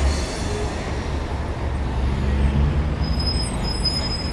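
Steady low rumble of city street traffic, with no distinct event standing out.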